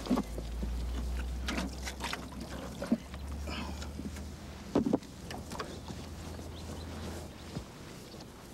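Scattered knocks and scrapes of workers handling a concrete grave-vault lid, which is cracking as it is lifted, with a heavier thump about five seconds in, over a low steady rumble that stops shortly before the end.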